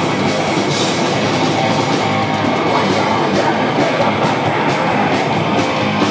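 An old-school heavy metal band playing live: distorted electric guitars, bass and a drum kit, loud and dense. From about two seconds in the drums settle into an even, quick rhythm.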